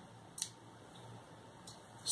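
Quiet room tone with a single short, sharp click or hiss about half a second in, and a fainter one near the end.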